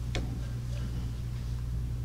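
Steady low electrical hum from the lecture hall's sound system, with one short click just after the start.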